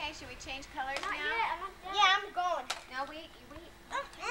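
Young children's high-pitched voices chattering and calling out, the words unclear.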